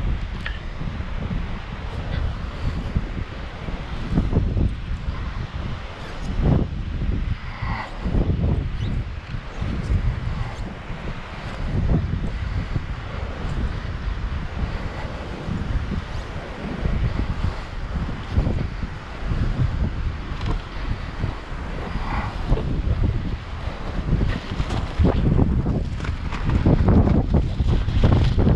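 Strong, gusty wind buffeting the microphone: a low rumble that surges and eases every second or so throughout.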